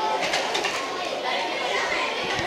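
Indistinct overlapping voices of people talking in a busy room, with a few faint clicks.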